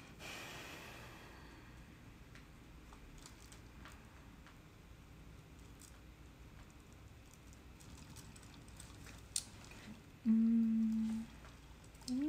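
Faint rubbing and small scrapes of fingers smoothing a dry, unfired clay candle holder, with a short hiss of friction at the start. About ten seconds in, a woman hums one steady note for about a second.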